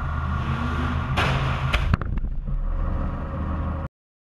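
Car engine running steadily, with a rush of noise and two sharp knocks about a second and a half in; the sound cuts off suddenly near the end.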